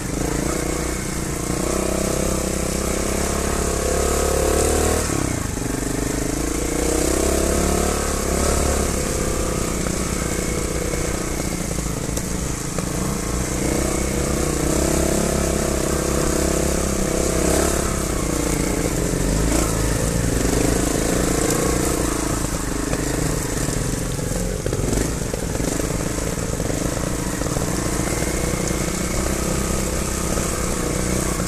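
Trials motorcycle engines running as they ride a rough trail, the pitch rising and falling over and over with the throttle.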